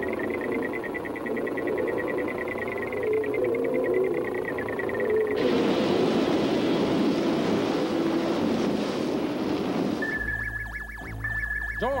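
Cartoon sound effects: a steady engine drone as the whale-shaped airliner travels, then from about five seconds in a loud, even rushing of a whirlpool, and from about ten seconds a radar's steady electronic tone over a low hum, with small sweeping blips near the end.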